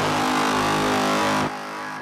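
A loud, sustained electronic chord with a hissing wash over it, part of the edited soundtrack; it starts abruptly and drops in level about a second and a half in.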